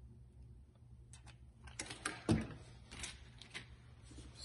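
Faint room hum, then about two seconds of handling noise: soft clicks and rustling with one dull knock, as things are set down and picked up on a workbench.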